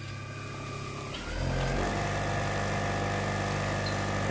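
Car alternator run as an electric motor on 48 volts, speeding up about a second in: its pitch rises and it gets louder, then it runs steadily at close to 3,000 rpm.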